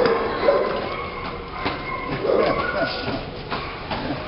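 A tennis ball bouncing on a concrete walkway, a couple of sharp knocks about two seconds apart, over a steady background with faint voices and animal sounds.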